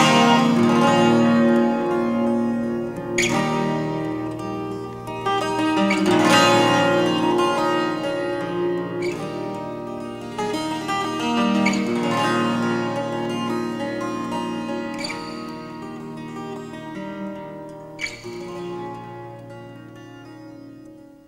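Instrumental music: a twelve-string acoustic guitar fingerpicked, with chords rung out about every three seconds and left to sustain. The whole slowly fades out.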